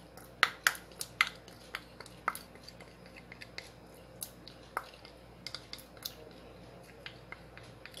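A spoon clicking and tapping against a small glass cup as sticky honey is scraped out into a glass bowl: a run of short, sharp clicks, several close together in the first couple of seconds, then fewer and fainter.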